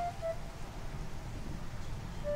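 The last held note of a soft background music melody ends a few tenths of a second in, leaving only a low, steady background rumble.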